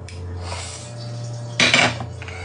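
A spoon scraping thick custard into a plastic blender cup, with a short loud clatter against the cup near the end.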